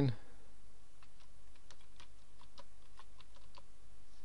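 Computer keyboard being typed on: a quick run of about a dozen separate keystrokes, starting about a second in, as a password is entered.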